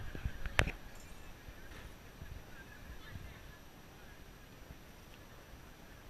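A few low knocks and one sharp click in the first second, from the camera being jostled as the diver climbs, then faint steady outdoor noise.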